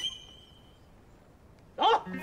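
A single plucked music note rings out briefly, then near quiet, then a man's short loud shout of "走" ("go!") just before the end.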